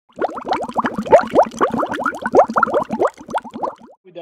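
Intro sound effect of bubbling water: a fast stream of short rising plops, many a second, thinning out near the end.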